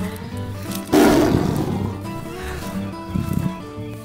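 A lion roar sound effect: a sudden loud roar about a second in that fades away over a second or so, over steady background music.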